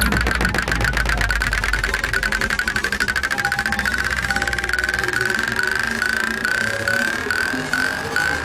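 Psytrance music: a fast-pulsing synthesizer line slowly rising in pitch over a held bass. The bass drops out about five seconds in, leaving short repeated rising synth sweeps at about three a second.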